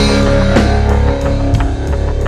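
Rock band music: electric guitar and a drum kit playing at a steady beat.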